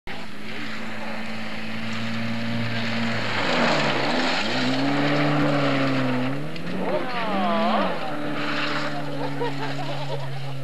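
Rally car's engine at speed on a gravel stage. Its note drops and climbs back up a few seconds in, then rises sharply and wavers briefly near the eight-second mark, over a steady hiss of tyres on loose gravel.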